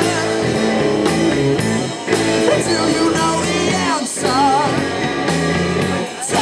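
Live indie folk-rock band playing: a man singing over guitars and a drum kit, with brief breaks about two and four seconds in.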